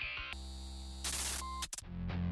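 Title-sequence sound design between music cues: a steady low electronic drone, with a burst of static-like hiss about a second in and a short high beep. It cuts out sharply just before the music returns.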